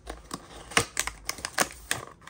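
Small cardboard blind box handled and its top flaps pried open: a quick run of crisp clicks and scrapes, the sharpest twice, about a second apart.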